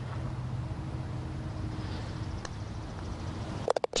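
A single faint click of a putter striking a range ball about two and a half seconds in, over a steady low background hum.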